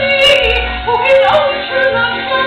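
A woman singing a musical-theatre song with instrumental accompaniment.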